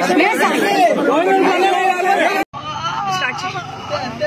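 Crowd of voices talking and shouting over one another. About two and a half seconds in it cuts off suddenly to a quieter, duller recording of voices over a low steady hum.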